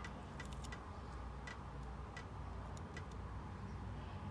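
Faint, irregular small clicks and ticks as masking tape is peeled off a die-cast toy truck body held in a clamp. A low steady hum runs underneath.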